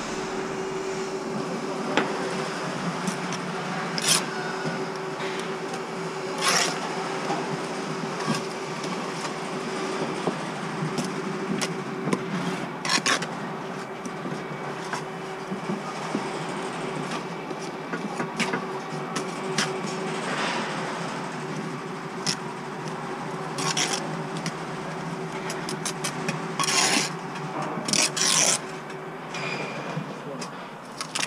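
Steel brick trowel scraping and cutting mortar on a spot board and against bricks, in scattered strokes with occasional sharp knocks, over a steady background hum.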